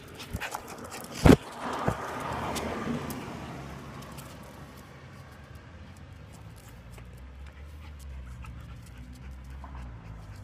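A dog close to the phone's microphone, with a sharp knock about a second in, the loudest sound, and a smaller knock soon after as the phone is jostled; a low rumble runs under the later part.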